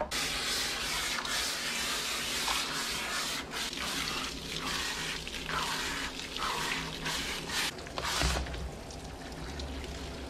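Water spraying from a handheld hose nozzle into a dog's soaked, foamy coat, the hiss broken by short dips as the nozzle moves. About eight seconds in the spray falls away.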